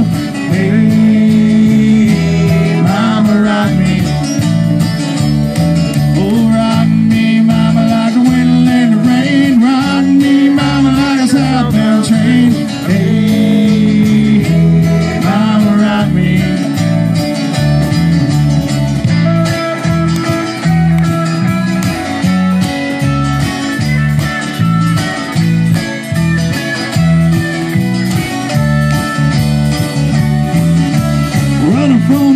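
Live country-rock band playing an instrumental break: electric and acoustic guitars over electric bass and a drum kit keeping a steady beat.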